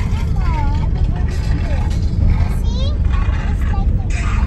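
Steady low rumble of a car's engine and tyres heard from inside the cabin as it drives slowly, with voices over it.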